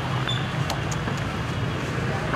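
Street background noise: a steady low traffic rumble with a few faint ticks.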